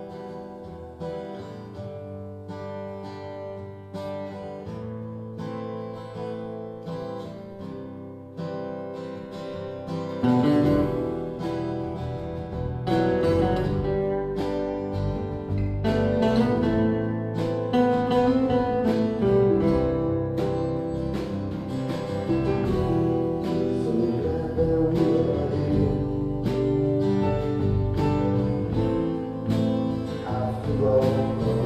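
Live band music led by strummed and picked acoustic guitars in a slow song. About ten seconds in, a fuller accompaniment with bass comes in and the music gets clearly louder.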